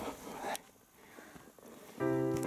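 A brief rustling scrape of a hiker's clothing and gear, followed by faint scattered clicks.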